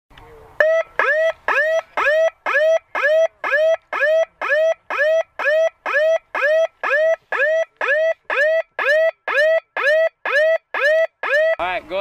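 A chemical agent alarm sounding: loud, evenly repeated electronic beeps, about two a second, each rising quickly in pitch and then holding. It is the warning signal for a chemical or biological hazard.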